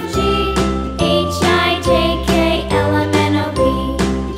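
Children's music: a bright, steady tune with a melody over a bass line that changes note about once a second.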